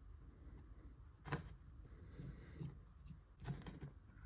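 Faint, scattered clicks and taps of fingers handling a small-engine carburetor body while setting a new rubber needle seat into it; the sharpest click comes about a second in.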